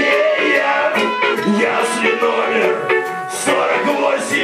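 A live band playing a loud up-tempo number: a horn section of saxophone, trombone and trumpets over drums and guitar, with cymbal hits keeping a steady beat.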